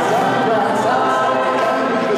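Mixed a cappella choir of men and women singing, a wavering lead melody over the group's sustained harmonies, at a steady level.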